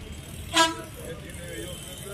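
A single short, loud beep of a vehicle horn about half a second in, over a low steady traffic rumble and faint murmuring voices.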